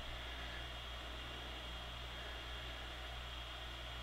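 Steady faint hiss with a low electrical hum: the recording's background noise, with no distinct handling sounds.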